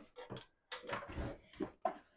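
Quiet knocks and scraping of a box being pushed onto a wooden cabinet shelf to see whether it fits: several short bumps, with a brief scrape near the middle.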